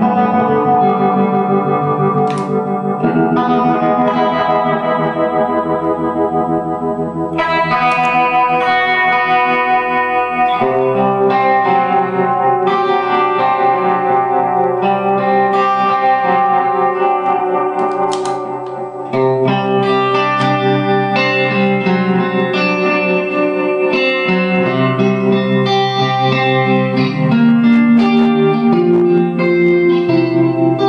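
Electric guitar played through an effects pedalboard into a Diamond Spitfire amp set clean: sustained chords and single notes ringing on and changing every few seconds. There is a short drop in level a little past halfway.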